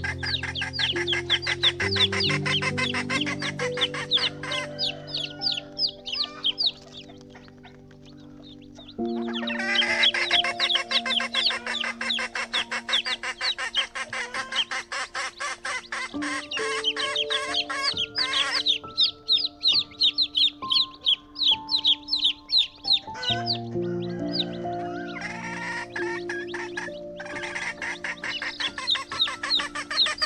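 A large flock of chickens clucking and calling in a dense, rapid chatter, over background music of held chords. The flock's calls drop away for a few seconds about a quarter of the way in while the music carries on, then return.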